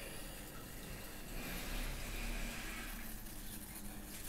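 Pencil lead scratching across paper as a line is drawn: a soft hiss that grows a little louder from about a second and a half in and eases before the end.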